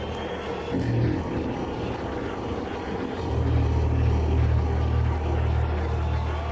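Electric bass guitar playing deep, droning low notes through an arena PA. Two short swells come near the start, then a low note swells up about three seconds in and is held.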